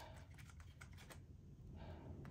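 Faint light ticks and rustles of paper banknotes being thumbed through and plastic binder envelopes being handled, mostly in the first second.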